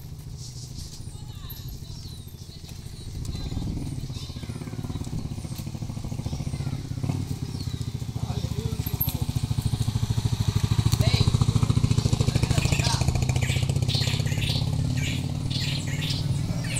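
A motorcycle engine running at low revs, growing louder from about three seconds in as it comes closer, with birds chirping.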